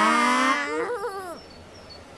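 Cartoon character voices making a drawn-out, wordless, sad-sounding 'aww', several voices together. About a second in, one voice ends it with a quick wobbling pitch. The sound then drops away to a quiet background.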